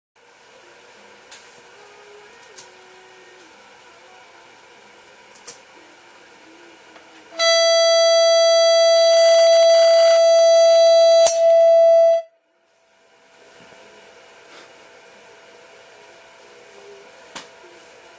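A loudspeaker driver pressed against a wine glass blasts one loud, steady tone, pitched to the glass's resonance, for about five seconds starting about seven seconds in. Near the end of the tone there is a single sharp crack as the glass breaks, and the tone cuts off about a second later.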